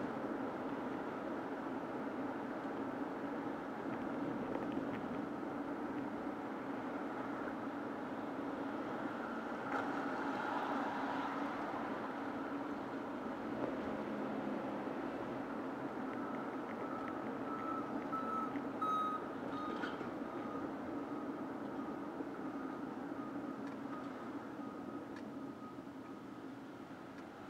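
Car driving in city traffic, heard from inside the cabin: a steady rumble of engine and tyre noise. About two-thirds of the way through, a thin, high, steady tone joins it, and the noise eases slightly near the end as the car slows.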